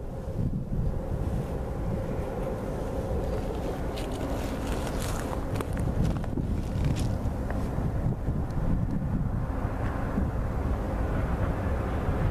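Wind buffeting the microphone, a steady low rumble with a few brief crackles, over a faint steady hum.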